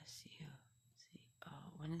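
A person's voice speaking softly, close to a whisper, then rising into normal speech near the end.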